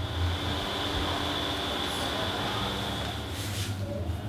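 Steady low background hum with a thin high whine that fades near the end, where a brief plastic-bag rustle comes in.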